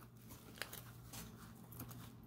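Faint crinkling of a rolled paper flower being crushed between the fingers, with a few small ticks of paper.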